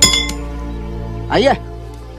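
A single sharp metallic clink at the very start that rings briefly, over steady background music.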